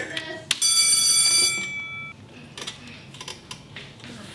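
A sharp click, then a single high ringing chime that fades away over about a second and a half.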